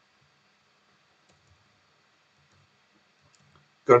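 Near silence with a few faint clicks from computer input; a man's voice starts at the very end.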